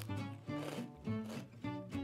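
Soft background music of plucked notes, with faint crunching of a crispbread cracker being bitten and chewed.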